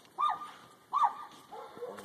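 A dog giving two short, high yips about a second apart.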